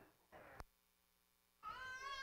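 Near silence, then near the end a faint, high-pitched cry that falls slightly in pitch, like a small child's or a cat's.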